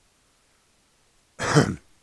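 A man clearing his throat once, a short rough burst near the end of an otherwise near-silent stretch.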